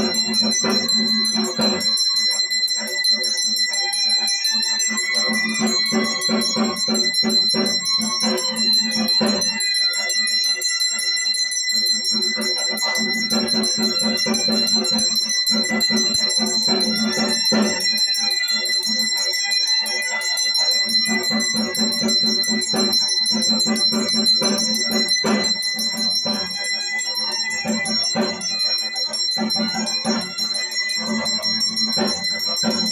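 Brass hand bell (ghanta) rung without pause in quick strokes during aarti. Under it, a lower pulsing beat comes and goes in stretches of a few seconds.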